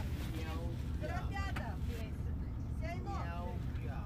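A person talking, with a steady low rumble underneath throughout.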